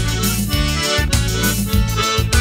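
Instrumental break of a sertanejo raiz song: accordion playing the melody over a bass line that changes note about every half second.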